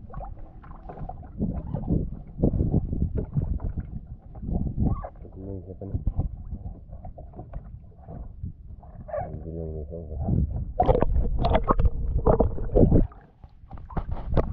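Water sloshing and slapping against the hull of a small wooden outrigger boat, heard close up from the waterline as a low, uneven rumble with irregular knocks.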